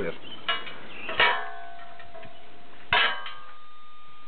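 Three sharp metallic clinks of steel bolts against the press's painted steel bar, the second and third louder. Each leaves a clear ringing tone that hangs on for a second or more.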